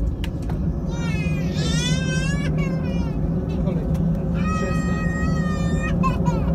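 Steady low rumble of an Airbus A319's CFM56 jet engines, heard from inside the cabin while the airliner taxis. Over it a young child gives high-pitched squeals and laughs, a wavering one about a second in and a longer held one near the end.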